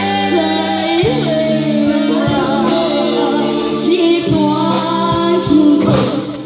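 A boy and a young woman singing a duet through stage microphones over a live band.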